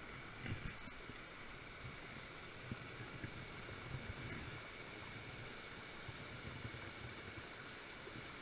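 Steady rush of a rocky gorge stream, with a few faint soft knocks.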